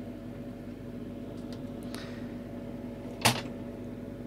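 Steady hum of a Tektronix TM5006 mainframe's noisy cooling fan. A few faint clicks, then one sharp click about three seconds in, as a test lead's banana plug is pushed into a power-supply output jack.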